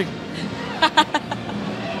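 A quick run of short laughs about a second in, over a steady murmur of background noise from a crowded hall.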